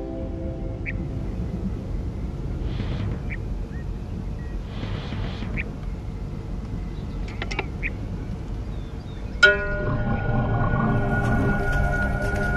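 Film soundtrack: a low rumbling drone with a few short high chirps, then, about nine and a half seconds in, a sudden struck note opens sustained music.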